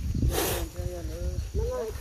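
People talking, with a brief hiss about half a second in.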